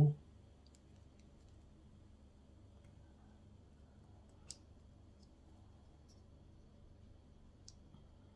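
Small model-kit engine parts being handled and pressed together by hand: a few faint, sparse clicks, the sharpest about four and a half seconds in and another near the end.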